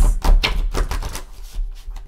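A deck of oracle cards being shuffled by hand: a rapid, dense run of card clicks, with low handling thumps at the start.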